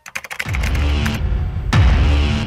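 A rapid run of typewriter-style key clicks, a typing sound effect for an on-screen caption, for the first half second. Then electronic music with a heavy bass beat comes in, with a deep falling bass hit a little before the end.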